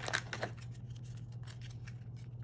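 A perforated cardboard calendar door being pried and torn open: a quick run of crisp crackles and clicks in the first half second, then only faint small ticks. A low steady hum runs underneath.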